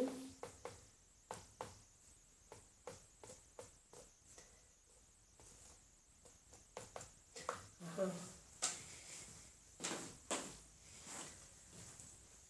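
A run of faint, irregular clicks and taps, with a brief soft murmur of a voice about eight seconds in.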